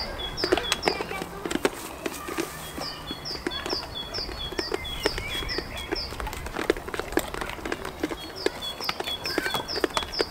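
A small songbird singing a repeated two-note phrase: a high falling note, then a lower short one, about three times a second, in three runs. Underneath are scattered sharp knocks and scuffs of goats moving about on stone paving slabs.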